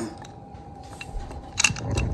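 Handling noise: a few short clicks and taps as a phone is moved and a small box is picked up on a table, starting about a second and a half in, over a faint steady tone.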